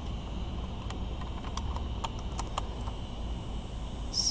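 A handful of light plastic clicks and rattles as the lid of a plastic milk crate is lifted and the small items inside are handled, mostly in the first half. A steady low rumble runs underneath.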